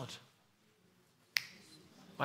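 A single sharp click about a second and a half into a quiet pause.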